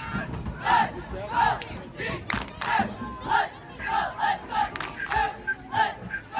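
Cheerleading squad shouting a cheer in unison: a rhythmic string of short, loud shouted calls, two or three a second.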